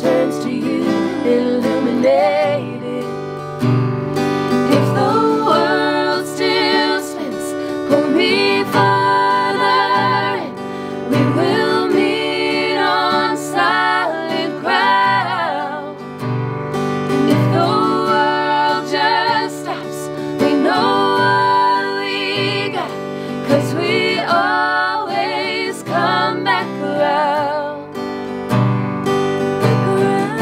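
Acoustic guitar strummed under three women singing together in close vocal harmony, a live acoustic song performance.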